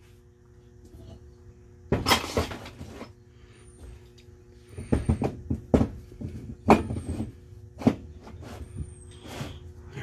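Small hammer tapping a steel punch against a TRW power steering pump held on wooden blocks: about half a dozen short, sharp, irregular taps in the second half, driving an internal part out of the pump housing. Near two seconds in, a wooden block is set down on the bench with a knock and a scrape.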